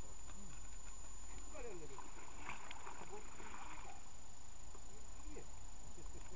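People's voices talking in the background, with a steady high-pitched whine throughout and a short spell of clicking, rustling noise about halfway through.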